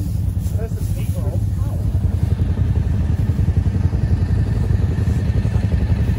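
ATV engine idling steadily close by, a low even running sound with no revving.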